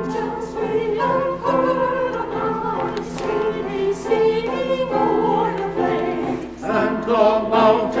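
Church chancel choir singing a choral carol arrangement, mixed voices in sustained harmony.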